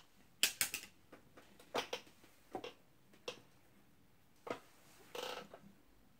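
Handling noise from small makeup items being picked up and set down: a scattered series of sharp clicks and taps, several close together about half a second in, then a short rustle about five seconds in as a cotton swab is taken up.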